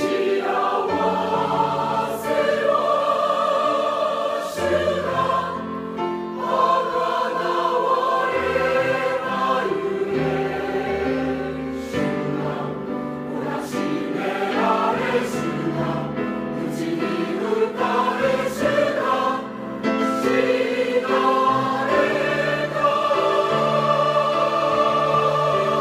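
A large church choir singing a sacred Easter hymn in sustained, full chords, coming in strongly right at the start.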